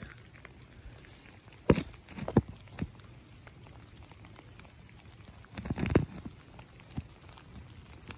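Light rain on wet ground: a faint steady hiss with scattered drop taps. A few sharper knocks stand out, the loudest about two seconds in, and there is a brief low rumble near six seconds.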